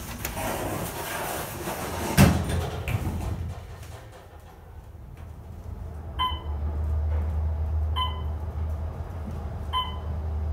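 OTIS traction elevator: the doors close with a knock about two seconds in, then the car rides up with a steady low hum from about six seconds in, and a short beep sounds about every two seconds as it passes floors.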